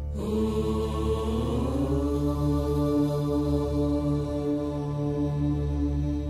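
Devotional chant music: a voice chanting one long note over a steady low drone, sliding up in pitch over the first two seconds and then holding it.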